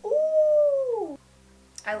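A woman's drawn-out, high-pitched "ooh" of approval, about a second long, arching slightly and dropping away at the end, over quiet background music.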